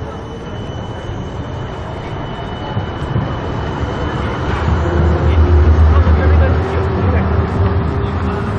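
City tram passing close by on street rails, its low rumble building from about three seconds in and loudest a couple of seconds later, over general street noise.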